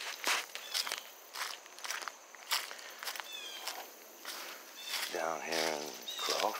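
Footsteps on gravel and dry fallen leaves at a steady walking pace, about two steps a second.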